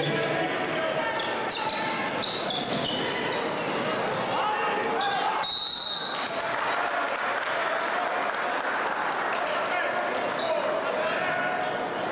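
Basketball being dribbled on a hardwood gym floor amid the steady noise of a crowd of spectators' voices. About halfway through comes a short, high referee's whistle.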